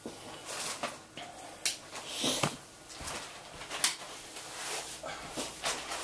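Light switch clicked off in a small room, among scattered knocks and rustles of someone moving about. There are a couple of sharp clicks and a few brief hissing rustles.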